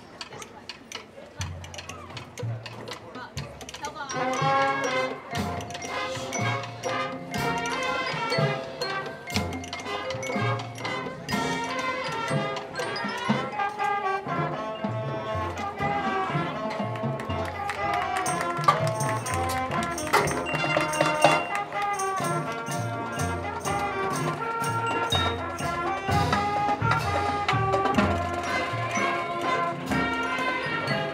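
Marching band playing: brass chords over drumline and front-ensemble percussion. It starts softly with low bass notes, and the full band comes in about four seconds in and plays on loudly.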